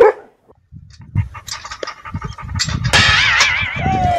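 Dogs barking and yipping in excitement, ending in a long wavering high whine from about three seconds in.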